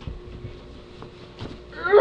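A child's voice letting out a drawn-out whimpering whine near the end. Before it there is only a faint steady hum and a few soft clicks.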